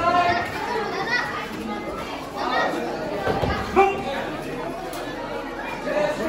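Crowd chatter: many overlapping voices echoing in a large hall, with one brief louder peak a little past halfway.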